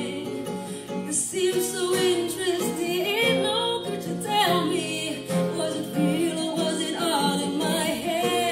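A woman singing a song live into a handheld microphone, with instrumental accompaniment beneath her voice.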